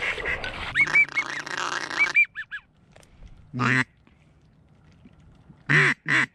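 Duck call blown in quacks: one quack just past the middle, then near the end the first loud note of a fast comeback call, a run of quacks falling in pitch. Before that, about two seconds of rustling noise with short high chirps.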